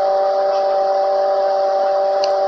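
A steady, unchanging hum of a few pitched tones over a background hiss.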